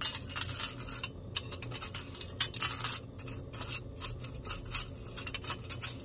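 Silver chain and metal tweezers clinking and scraping against a small stainless steel pot as the chain is swished through hot sulfur blackening solution, with irregular clinks throughout. A steady low hum runs underneath.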